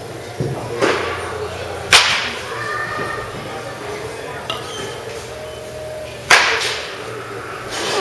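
Baseball bat striking balls in batting practice: two sharp cracks about four seconds apart, with a couple of fainter knocks in the first second.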